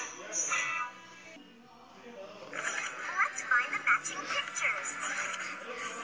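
Several children's TV end-credit sequences playing at once through a television speaker: music that thins out about a second in, then from about two and a half seconds a jumble of overlapping voices and music.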